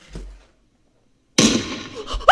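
A single sudden loud bang about one and a half seconds in, a staged gunshot sound, its noisy tail dying away over half a second. A soft low thump comes just before, near the start.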